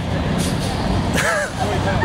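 Steady rumble of traffic on a busy city road, with a brief voice cutting in a little after a second.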